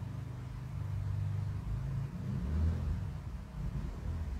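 A low rumble with a faint drone that shifts slightly in pitch, a little louder in the middle.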